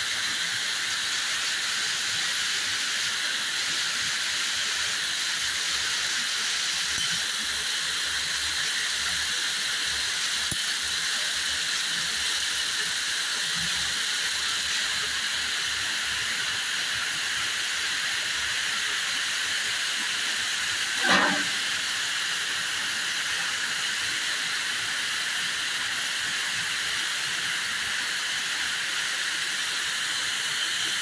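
Thread winding machines running together, a steady high whirring hiss of spinning spindles and yarn. About two-thirds of the way through, a short sharp squeak rises briefly above it.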